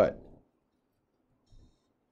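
A man's spoken word trailing off, then near silence with one faint, brief click about a second and a half in.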